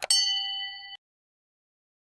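A mouse click followed by a bright bell ding that rings for about a second and cuts off suddenly: the notification-bell sound effect of an animated subscribe button.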